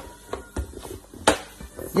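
Hands handling an inflated latex balloon: a few scattered soft clicks and rubbery rubbing, with one sharper click a little past halfway.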